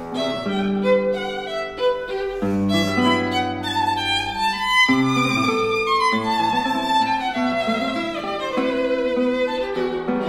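Violin and classical guitar playing as a duo: the bowed violin carries held, shifting melodic notes over the guitar's plucked accompaniment.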